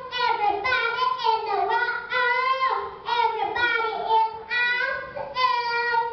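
A young girl singing a gospel praise song solo into a handheld microphone: one child's voice in sustained, gliding sung phrases, with no instruments heard.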